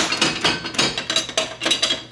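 Gachapon capsule-toy machine being worked by hand: a quick, irregular run of plastic clicks and clatters as the crank is turned and the capsule comes out.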